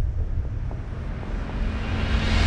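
A low, steady rumbling drone of dark ambient sound design, with a faint hiss above it.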